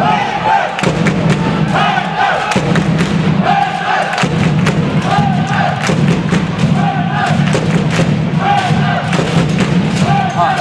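Sports-hall crowd of supporters chanting a short call over and over, about once every second or so, with steady thumping and sharp thuds throughout.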